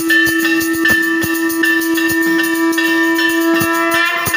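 Temple bells and drums struck rapidly and unevenly, the bells ringing on over one another, with one long steady held note sounding over them.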